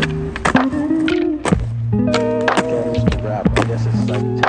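A skateboard popping and landing on asphalt, its wheels and deck knocking against the ground several times, with background music.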